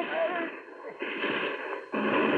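Radio-drama battle sound effect of an artillery barrage: a continuous rumble of shellfire that dips and swells again about a second in, with a man's voice tailing off at the start.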